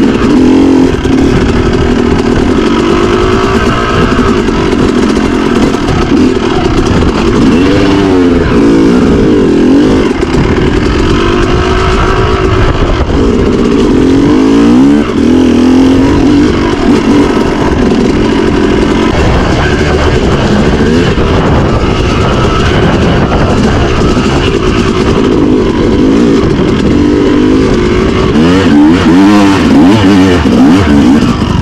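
Yamaha YZ250 two-stroke dirt bike engine being ridden, its pitch rising and falling again and again as the throttle is worked.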